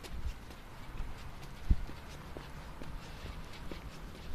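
Footsteps of a person walking, picked up close by a hand-held camera, with one sharper knock about one and three-quarter seconds in.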